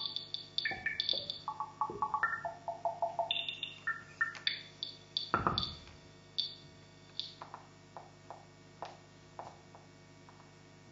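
Electronic synthesizer playing quick runs of short blips that jump between high and middle pitches. About five and a half seconds in there is a louder sweeping tone, and after that only a few faint clicks remain over a low hum.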